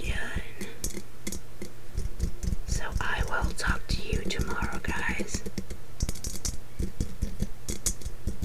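Fingertips and fingernails tapping quickly and irregularly on a glass snow globe, many light clicks a second.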